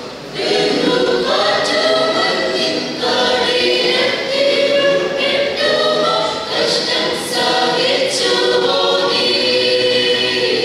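Mixed church choir singing a Malayalam Christmas song in long, held notes, with a brief dip in level at the start as a new phrase comes in.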